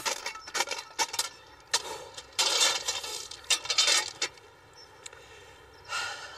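Crushed-stone railway ballast being shovelled and packed under a sleeper: stones clinking and crunching in a series of sharp scrapes and knocks, busiest around the middle, stopping a little over four seconds in.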